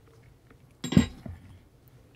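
A ceramic mug set down on a hard tabletop about a second in: one solid knock with a brief clink.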